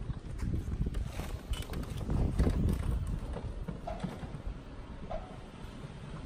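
Electric three-wheeled scooter pulling away on a paved road: a low rumble with scattered knocks and rattles, loudest about two to three seconds in, then fading as it moves off.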